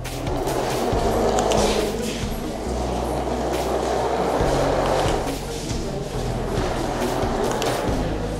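A small remote-control toy car's electric motor and plastic wheels rolling steadily across a hard floor, carrying a cardboard bin, with background music underneath.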